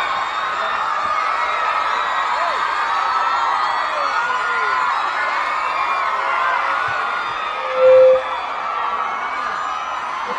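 Large crowd cheering and shouting, many voices mixed together with whoops and yells. About eight seconds in, a brief loud tone rises above the crowd.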